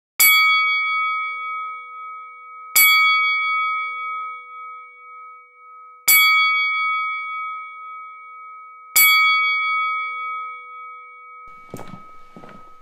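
A bell-like metallic ding, struck four times a few seconds apart, each one ringing on and fading slowly. Near the end comes a soft scuffing thump.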